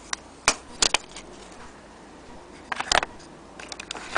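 Plastic clicks and knocks from the black case of a vintage gramophone needle sharpener being handled and set into its cardboard box. There are a few sharp clicks in the first second, a cluster of clicks about three seconds in, and lighter ticks near the end.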